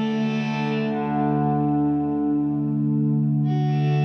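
Stoner/doom metal instrumental passage: sustained, effects-laden electric guitar chords ringing out. The upper tones thin out about a second in and come back suddenly near the end.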